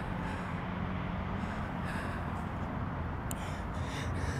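A steady low rumble under a light hiss, with a single brief click about three seconds in.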